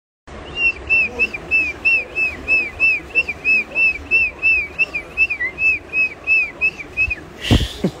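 Pomeranian dog whining in a rapid, regular run of short high-pitched squeaks, about three a second, each rising and falling in pitch. Near the end the squeaks stop and there is a loud bump.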